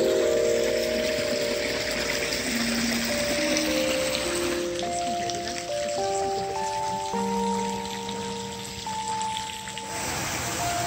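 Slow instrumental background music of long held notes that step from one pitch to the next, over a steady hiss of water.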